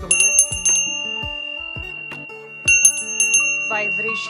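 Small brass hand bell rung in two quick flurries of strokes, one at the start and one about two and a half seconds later. Each flurry leaves a long, clear high ring that hangs on between them.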